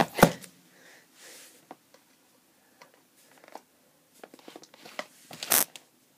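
Knife cutting into a cardboard tablet box and its tape, with scattered scrapes, taps and crinkles of the packaging being handled, and a louder scraping burst about five and a half seconds in.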